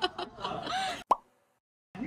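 Chatter and laughter, then a single short cartoon-style plop sound effect with a quick pitch sweep about a second in.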